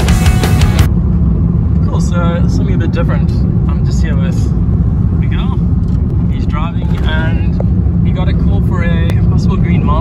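Inside a moving car's cabin: steady low road and engine rumble while driving. Rock music cuts off just under a second in.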